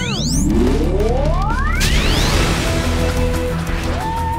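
Cartoon soundtrack music with a steady deep bass. Over it, a zooming sound effect climbs steadily in pitch for about two seconds, and a whoosh comes in about halfway through.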